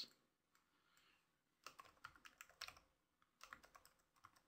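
Faint computer keyboard typing: two short runs of keystrokes, one starting about a second and a half in and one near the end, with near silence before them.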